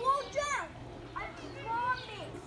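Young children's voices, high-pitched and calling out in two short bursts: one at the start and another about a second later.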